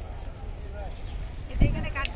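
Background chatter of a crowd over a steady low rumble. Near the end there is a loud thump, followed by a short, wavering, high-pitched call.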